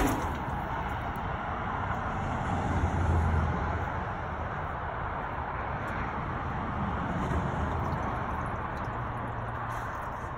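A single sharp knock right at the start, then steady outdoor background noise with a low rumble that swells about three seconds in and fades again.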